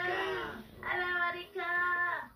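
A toddler singing long held notes without clear words, three sustained notes with short breaks between them, heard through a television's speaker.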